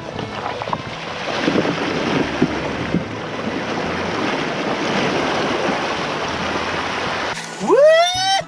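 River water rushing and splashing against a car's wheel and side as it drives through a shallow ford, heard close up from a camera mounted on the car's side. The sound is steady and cuts off suddenly near the end.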